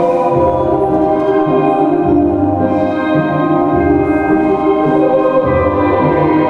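Music with sustained chords and a choir-like sound over low bass notes that change every second or two.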